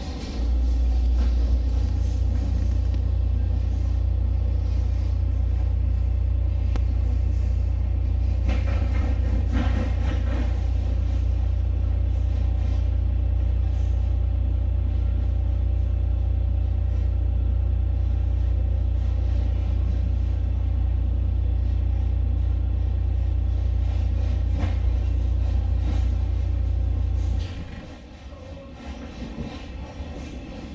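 Steady, loud low rumble of a moving passenger train heard from inside the carriage; it cuts off abruptly near the end.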